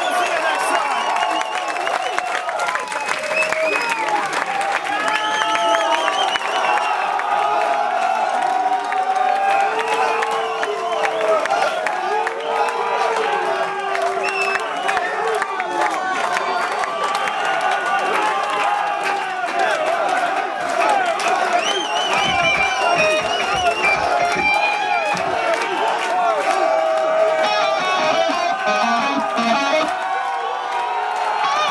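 Concert crowd cheering and shouting with many voices, with clapping throughout, calling for an encore after the band leaves the stage.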